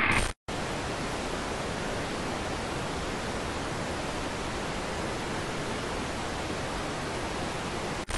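TV static hiss as an editing sound effect: a short burst at the very start, a brief cut-out, then a steady, even hiss.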